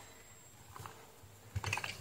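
Light clicks and rustles of a headset cable and its plastic sleeving being handled by hand, with a short cluster of clicks near the end.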